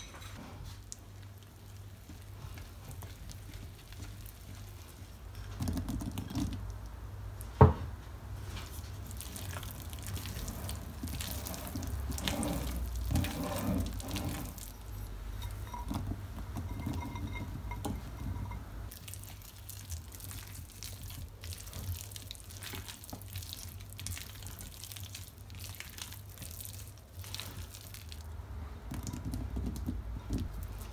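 A thick cake batter being mixed in a glass bowl, with a single sharp clink of utensil on glass about eight seconds in. Later, diced meat is tipped from a ceramic bowl into the batter and worked in, ending with a wooden spoon stirring.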